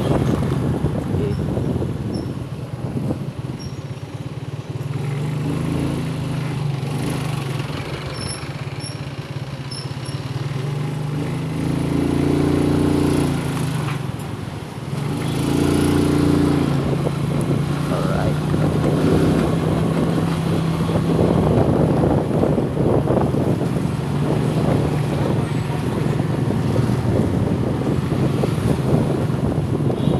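Engine of a vehicle driving through city streets, running steadily under road and traffic noise. The engine note grows fuller and louder twice, about twelve and sixteen seconds in, with a brief dip between.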